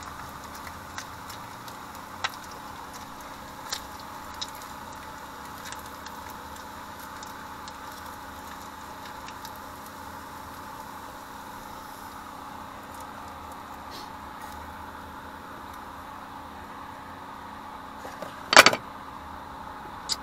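Bacon sizzling steadily in a stainless steel frying pan on a gas burner, with a few light taps of a wooden spatula against the pan in the first few seconds. A single loud metallic clatter near the end.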